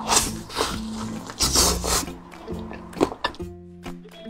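Fried chicken being bitten and chewed close to a lapel microphone: several sharp bites, the longest one about a second and a half in. Background music plays throughout.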